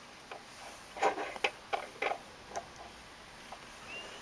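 A quick run of light clicks and taps, about five or six between one and two and a half seconds in, with a single faint click before and after.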